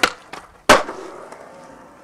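Skateboard on a concrete ledge: a sharp clack right at the start, a couple of small clicks, then the loudest crack of the board hitting concrete under a second in, followed by a fading hiss of the wheels.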